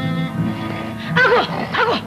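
Two short wavering cries, the first a little over a second in and the second just before the end. They are the loudest thing here, sounding over orchestral film music with sustained strings.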